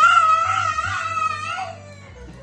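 A toddler crying: one long, high-pitched wail with a slightly wavering pitch that trails off near the end.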